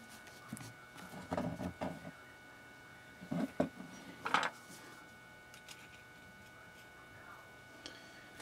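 Small clicks, knocks and scrapes in a few short clusters over the first half, as a gloved hand works the cover off a cordless screwdriver's metal planetary gearbox.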